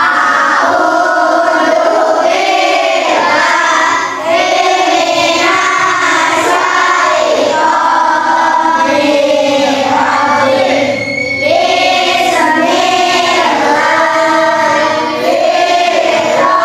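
A class of young schoolchildren singing a song together in unison, in phrases with short breaks about four, eleven and fifteen seconds in.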